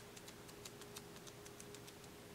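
Near silence: faint room tone with a light steady hum and scattered faint ticks.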